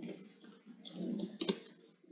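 Typing on a computer keyboard: a quick run of keystroke clicks, with one sharper, louder click about one and a half seconds in.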